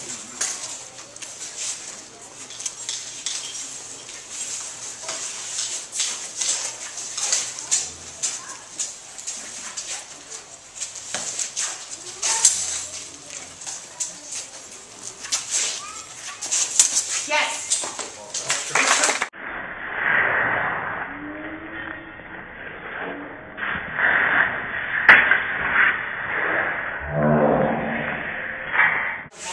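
Steel rapier blades clicking and scraping against each other in a fencing bout, a quick irregular run of sharp clicks, with spectators talking. About two-thirds of the way through the sound turns duller and muffled, with voices and one sharp knock.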